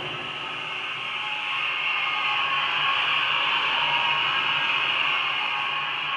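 Steady room noise: an even hiss with a low hum under it.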